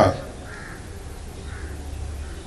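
Two faint, short bird calls, one about half a second in and one near the end, heard in a pause in amplified speech over a steady low hum.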